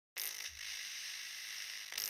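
Steady high hiss of static noise, the kind laid under a grainy glitch-effect intro, starting just after the first moment.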